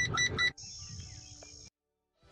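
Aftermarket reverse parking sensor alarm beeping rapidly, about six high beeps a second, warning that something is close behind the reversing car. The beeping cuts off about half a second in and gives way to a faint steady high hiss.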